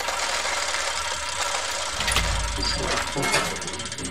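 Sound-designed title sting for an animated gear graphic: a dense, steady mechanical clatter like machinery and gears, with a deep low rumble coming in about two seconds in.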